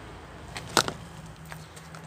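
A single sharp knock about a second in, with a fainter tap after it, over a quiet outdoor background and a low steady hum.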